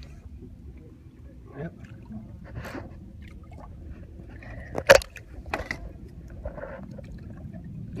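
Faint water splashing from a hooked redfish swirling at the surface beside the boat, over a steady low rush. A sharp knock about five seconds in is the loudest sound, followed by a smaller one.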